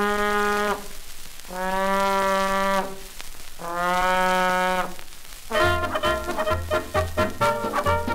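Old 78 RPM shellac record of a 1930s novelty fox-trot band: three long held brass horn notes, all on the same low pitch with pauses between them. About five and a half seconds in, the full band comes in with a bouncy beat of about two a second.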